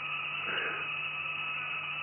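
A running spark-gap apparatus with an AC fan nearby: a steady low hum under an even hiss, with faint steady high-pitched tones.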